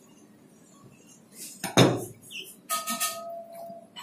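A heavy thump on a plastic cutting board about two seconds in as a whole hiramasa (yellowtail amberjack) is turned over, then about a second of knocking and clattering with a short metallic ring as the deba knife is handled and moved on the board.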